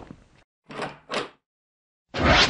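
The fading tail of a knock, then two short rushing noise bursts about 0.4 s apart, each swelling and dying away quickly.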